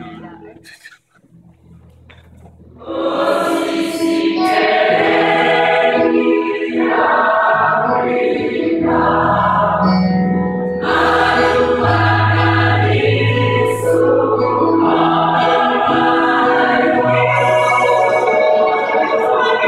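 A held chord fades out, and after a quieter pause of about two seconds a large mixed gospel choir of women and men comes in loudly and sings on, in phrases of sustained chords.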